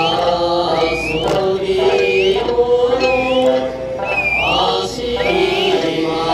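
Okinawan Eisa music: voices chanting a folk song, with paranku hand drums struck about once a second and short rising whistle-like calls repeating over it.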